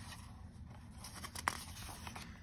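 A picture-book page turned by hand: faint paper rustling with one short sharp flick about one and a half seconds in.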